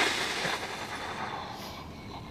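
Breathy laughter trailing off over the first second, then faint steady background hiss.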